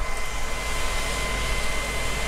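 Steady machine noise of the tractor and planter left running, with a constant high whine over it, mixed with wind rumbling on the microphone.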